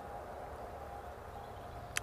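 Quiet outdoor background at a honeybee hive: a low, steady hum and hiss with faint bees flying at the entrance.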